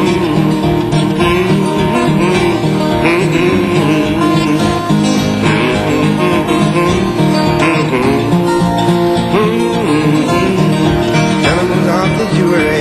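Acoustic guitar fingerpicked in an instrumental break of a country blues ballad, steady picked bass notes under a melody line, recorded live.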